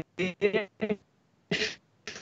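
A man's speech breaking up into short clipped fragments with dead-silent gaps between them: the remote call connection is dropping out.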